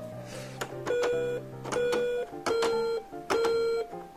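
Anpanman Yokubari Table toy's electronic key buttons playing a built-in tune on its own after a key press. The tune is four held, plain electronic notes about half a second each over a soft low accompaniment.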